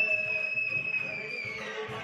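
One long, high whistle held on a single note, dipping in pitch and fading out near the end.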